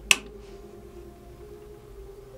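One sharp click of the rocker switch on an electric rotating display turntable, then the low, steady hum of its small motor turning about 40 pounds of iron weight plates. Under this load the motor is working a little harder.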